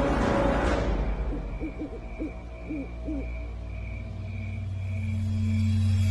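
An owl hooting in a quick run of short calls over a low, droning suspense score that swells toward the end. A faint high tone pulses about twice a second underneath.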